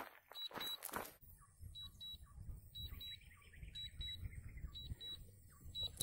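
DJI Mavic Pro remote controller beeping its warning: a high double beep about once a second. It is the alert given while the drone returns home on low battery.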